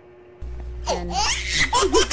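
High-pitched laughter in quick repeated bursts, starting about a second in, over a steady low hum that switches on abruptly about half a second in.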